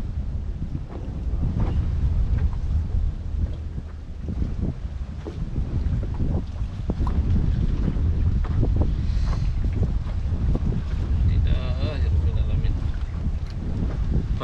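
Wind buffeting the microphone, a steady low rumble, with scattered small clicks and knocks from hands working the fishing line in a wooden boat.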